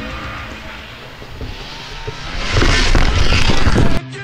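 Snowmobile engine revving hard, swelling loud about two and a half seconds in and cutting off abruptly at the end, as background rock music fades out.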